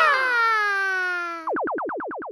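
The jingle's last sung 'yeah!' is held and slides slowly down in pitch. About a second and a half in it gives way to a quick run of falling electronic zaps, about six a second: a cartoon transition sound effect.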